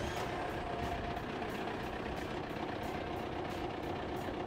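Heavy diesel trailer truck's engine idling steadily, heard close beside the cab.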